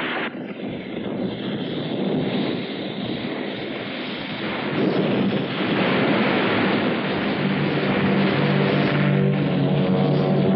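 Noisy, unpitched rumble from an old monster-movie soundtrack, an effect for smoke and breaking ice after an explosion. Low held music notes come in about halfway and grow toward the end.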